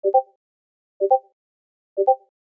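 Discord's new-message notification sound: a short two-note blip, heard three times about a second apart.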